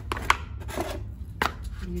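Flat slippers being handled and set down on a tile floor: two sharp taps about a second apart, the first the loudest, with rustling of handling and the cardboard shoebox between them.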